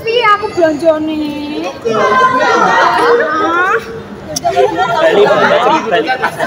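Mostly speech: a voice speaking lines in a large hall, with several voices overlapping from about two to four seconds in.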